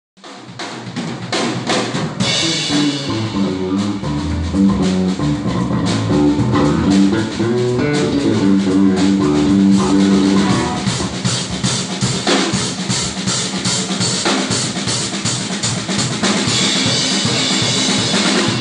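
Live electric bass and drum kit jamming: a funky bass line of low, moving notes over a busy beat of kick, snare and cymbals. The bass line stands out in the first half, then the drums carry on with fills and cymbal crashes near the end.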